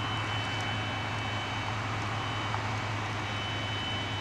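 Steady low rumble of idling emergency vehicles and road noise, with a faint, steady high-pitched tone above it.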